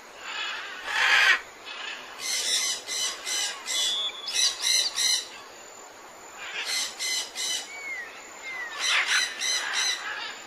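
Birds calling: groups of short repeated calls, several a second, with a louder burst about a second in and a couple of gliding whistles near the end.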